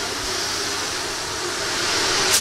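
Loud, steady hiss of pressurised gas venting, with a faint low hum beneath it.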